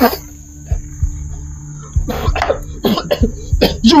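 A man coughing in a series of short, sharp bursts in the second half, over a low, steady drone of tense film music.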